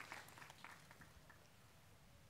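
Near silence, with a few faint scattered claps as the applause dies away.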